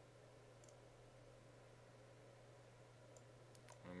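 Near silence over a steady low hum, broken by a few faint computer mouse clicks: one about a second in and three in quick succession near the end.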